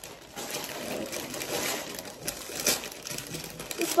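Rustling and crinkling of gift packaging being handled and opened by hand, with a few light clicks.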